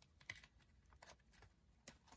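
Near silence, with a few faint light clicks and rustles of a plastic binder envelope pocket and paper banknotes being handled.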